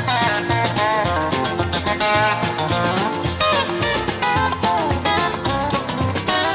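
Instrumental break of a 1973 Nashville country record: the band plays with guitar to the fore, sliding notes over a steady beat.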